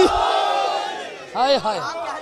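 A crowd calling out a response together, loud at first and fading over about a second, followed by a single man's voice calling out in a wavering pitch that swings up and down.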